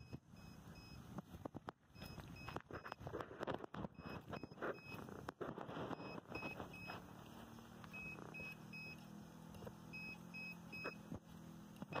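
Short high electronic beeps repeating on and off over scattered clicks and knocks of handling, with a low steady hum coming in about halfway through.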